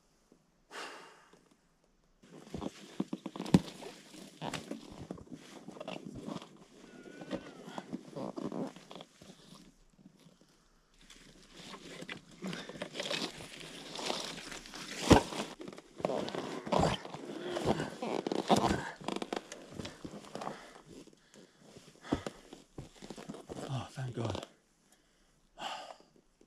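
A rider hauling a fallen, loaded Honda CRF300 Rally upright on a rocky trail. Boots scuff and crunch on loose stones, the bike and its luggage knock and scrape, and he breathes hard and grunts with the effort. The sounds come in bursts, with a short pause about ten seconds in.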